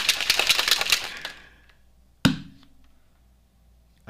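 Plastic shaker bottle of chocolate drink mix and almond milk being shaken hard, a rapid rattling slosh lasting about a second and a half. About two seconds in comes a single sharp snap as the flip-top lid is opened.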